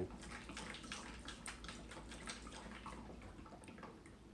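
A cat pawing at the water in a gravity-fed plastic pet water dish, making faint, irregular splashes and drips.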